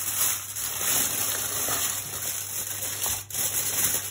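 Aluminium foil crinkling and rustling as hands press and fold a sheet over a roasting tray. It breaks off briefly a little after three seconds in.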